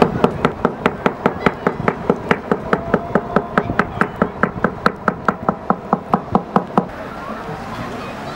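Rapid, even wooden knocking, about four strikes a second, stopping about seven seconds in: a cormorant fisherman beating the side of his wooden boat to rouse the cormorants as they fish.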